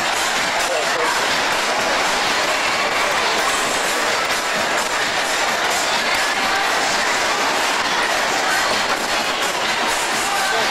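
A Music Express amusement ride running at speed, its cars clattering around the track in a steady rush of wheel noise.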